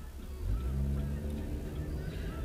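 A car's engine pulling away from a standstill, heard inside the cabin, its rumble rising about half a second in, with radio music playing underneath.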